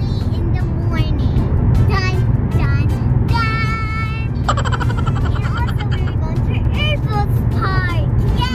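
Steady low road and engine rumble inside a moving car's cabin at highway speed, with children's voices and music over it.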